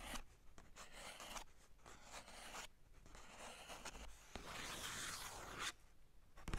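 Fingertips tracing over sketchbook paper, picked up close by a mini microphone lying on the page: a quiet series of scratchy rubbing strokes, the longest near the end.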